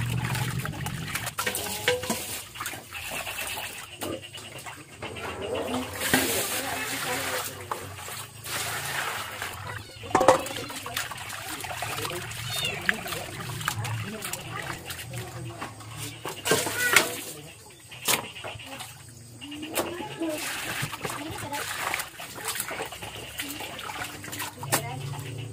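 Hands squishing and rubbing raw beef chunks in water in a stainless steel bowl: wet squelching and splashing, with a few sharp clicks.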